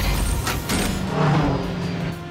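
Cartoon car sound effects over background music: a low thump at the start, then a car engine hum from a little under a second in.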